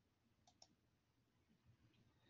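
Near silence, with two faint quick clicks close together about half a second in.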